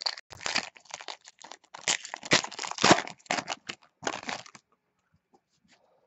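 Foil wrapper of a baseball card pack crinkling and tearing in the hands, in a quick run of short rustles that stops about four and a half seconds in.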